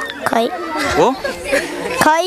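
Speech only: a crowd of children chattering, several voices overlapping.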